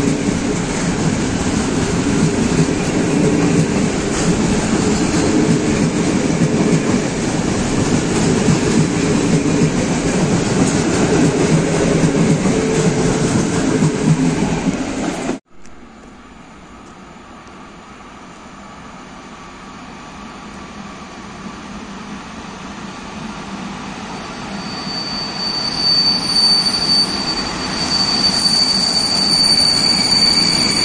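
Passenger carriages rolling past along a station platform: a loud, steady rumble of wheels on rail that cuts off abruptly about halfway. Then an EP07 electric locomotive and its train approach from a distance, growing steadily louder. A high squeal of wheels and brakes joins in over the last few seconds as the train slows into the platform.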